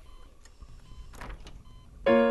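Faint sound of a door being opened by its handle, with a short scraping rustle of the latch and door about a second in.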